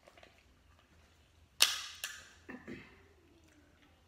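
Crab leg shell snapped apart by hand: two sharp cracks about half a second apart, the first the loudest, followed by a few softer crunches.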